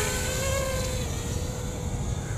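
Electric quadcopter drone in flight, its propellers giving a steady whining buzz whose pitch rises a little about half a second in and then sinks back, over a low rumble.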